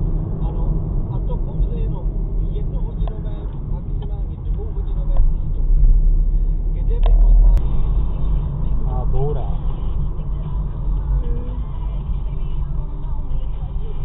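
Steady low rumble of a car's engine and tyres heard inside the cabin through a dashcam's microphone, with faint talk in the background and a single sharp click about halfway through.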